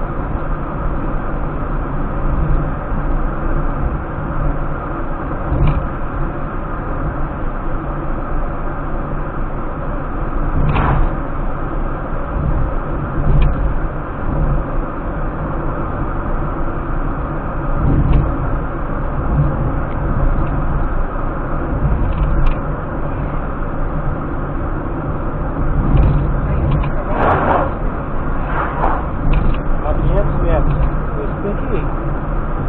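Steady engine and tyre road noise inside a car's cabin at highway speed, with a few brief light knocks or rattles, more of them near the end.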